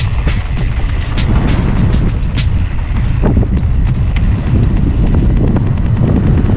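Wind buffeting the microphone of a camera on a mountain bike riding down a dirt trail, a steady rumble, with irregular clicks and rattles from the bike jolting over the bumps.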